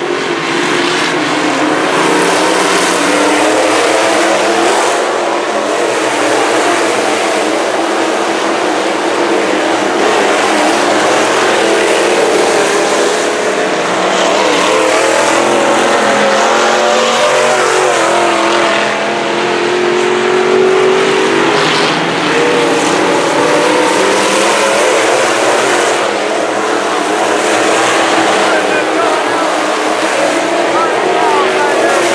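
A pack of IMCA Northern SportMod dirt-track race cars running laps together, their engines revving up and easing off in turns as they circle the oval and pass close by.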